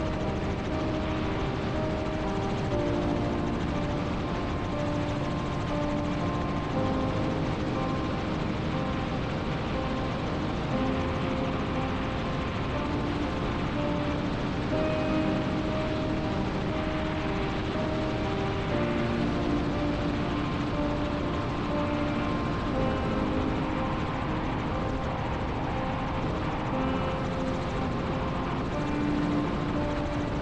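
Background music, a slow melody of held notes, laid over the steady noise of a helicopter in flight.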